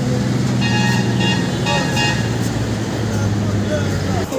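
Street traffic: a vehicle engine's steady low hum, with a few short high-pitched tones in the first two seconds.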